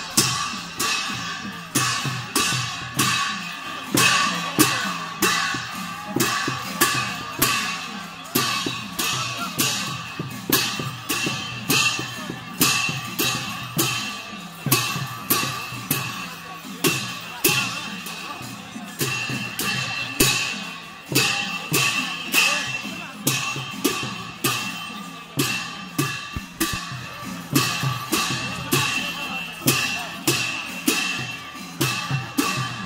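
Traditional Newar dance music of drums and clashing cymbals: a steady beat of about two strokes a second, with the cymbals ringing on between the strokes.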